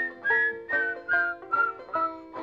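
Banjo picking an instrumental break between sung verses of a folk song, a steady run of plucked notes about two or three a second.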